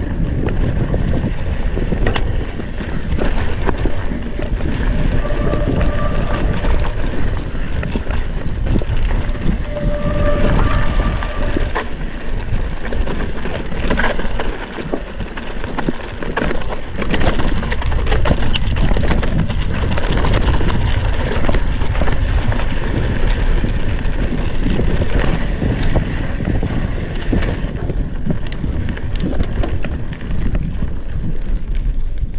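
Cross-country mountain bike riding fast down a rocky, gravelly downhill trail: steady wind rush on the microphone, with tyres crunching over stones and the bike rattling and clattering over the bumps.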